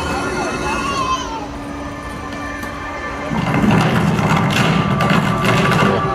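Crowd of people talking indistinctly, with music playing in the background; the sound grows louder about three seconds in.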